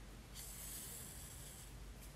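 Doubled white yarn drawn through crocheted fabric with a large-eye needle: a faint, high hiss lasting just over a second.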